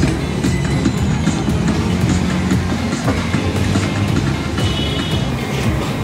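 Busy open-air market ambience: a loud, steady low rumble with scattered clatter, and music mixed in.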